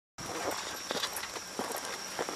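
Irregular footsteps and scuffs on pavement, with a faint steady high-pitched tone behind them.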